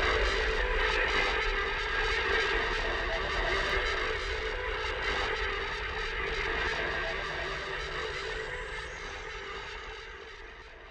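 Final chord of the outro rock music, an electric guitar left ringing, sustaining and slowly fading out.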